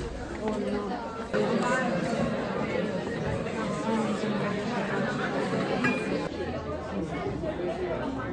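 Students chatting in a lecture hall: many voices at once in an indistinct babble, with no single voice standing out.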